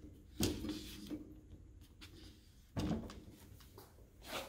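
Faint handling sounds of a motorcycle helmet being touched and moved on a tabletop: a short bump and rub about half a second in, another just before three seconds, and a fainter one near the end.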